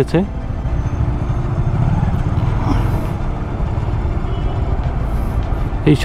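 Steady low traffic noise from motorcycle and car engines in slow, stop-and-go city traffic, picked up by a camera on a motorcycle.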